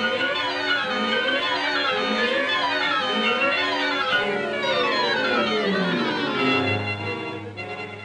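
Orchestral background music led by strings, playing quick runs of notes up and down, settling onto a held low note near the end.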